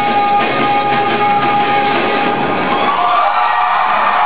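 Live rock band with trumpets and trombone holding a loud final sustained chord, which dies away about three seconds in.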